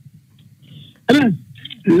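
A pause in a man's talk with only faint low background, then one short, loud vocal sound from him, a throat-clear or hesitant 'eh', about a second in. His speech starts again at the very end.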